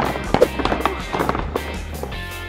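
Background music with a run of light, irregular clattering knocks: large cardboard brick blocks being kicked and knocked over.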